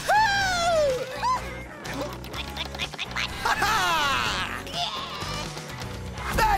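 Cartoon background music with comic sound effects: a long gliding, voice-like whoop in the first second, then a falling, slide-whistle-like glide about three and a half seconds in.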